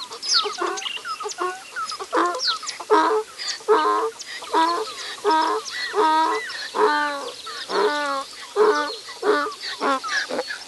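Farm poultry calling: quick high chirps in the first two seconds, then a run of about ten loud, evenly spaced calls, one every three-quarters of a second or so.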